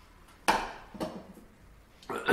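Two knocks about half a second apart, the first louder: a cast-iron hand-plane frog being picked up and turned over against a wooden workbench.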